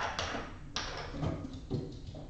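A few light clicks and knocks of small objects being handled, with two sharp clicks in the first second.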